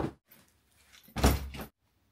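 A backpack and other things set down on a hotel bed: a short knock at the start, then a louder thump with rustling, about half a second long, a little over a second in.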